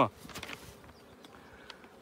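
Honeybees buzzing faintly around the beekeeper, with a few faint clicks.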